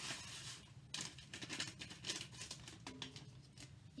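Dry Lipton chicken noodle soup mix shaken from its paper envelope into a pot of broth: a faint rustle of the packet, then a run of light ticks and rustles as the mix falls in about a second in.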